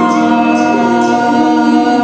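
A man singing solo into a microphone, holding long sustained notes that bend slightly in pitch.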